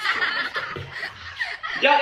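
A man chuckling in short, breathy bursts, strongest in the first half second.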